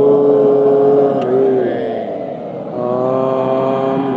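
Voices singing two long held notes: the first lasts about a second and a half and dips at its end, and the second starts about three seconds in.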